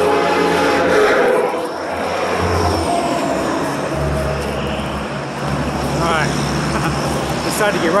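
Convoy traffic passing close by on an interstate: engine and tyre noise from trucks and a motorhome. A long, steady horn blast stops about a second in, and a low engine rumble comes in about halfway through as the motorhome goes by.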